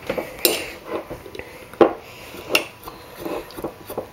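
Metal spoon stirring dried juniper berries and almond oil in a small glass jar, clinking against the glass several times.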